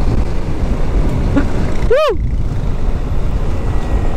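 Wind rushing over the microphone with the rumble of a Yamaha NMAX scooter riding at about 90 km/h. A short rising-then-falling "hu!" whoop comes about two seconds in.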